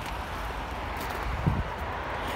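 Steady outdoor background noise, a low rumble with a hiss over it, and one brief soft low sound about one and a half seconds in.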